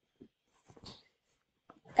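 A quiet pause: room tone with a few faint, short soft sounds, one about a quarter second in and a couple around a second in.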